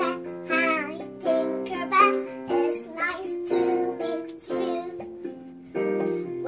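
A young girl singing an English children's song in short phrases over an instrumental accompaniment.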